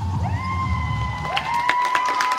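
Audience cheering as the dance music ends: high, held "woo" shouts that glide up and hold one pitch, with a few sharp claps in the second half.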